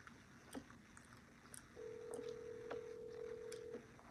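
A telephone ringback tone: one steady tone about two seconds long, starting near the middle, the sign that the called phone is ringing at the other end. A few faint clicks come around it.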